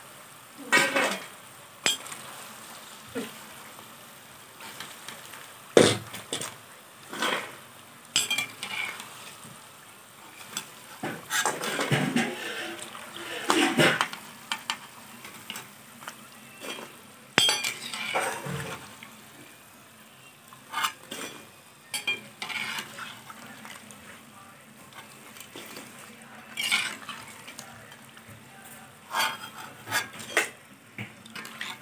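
A metal slotted spoon scraping and knocking against a metal kadhai as fried maida namkeen pieces are scooped out of hot oil. The sharp knocks come irregularly, every second or two, over a faint steady sizzle of the frying oil.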